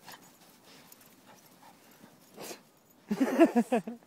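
Faint scraping and crunching of snow as a pit bull paws and bites at a snow mound, with a short louder scuff about halfway. Near the end a person laughs loudly.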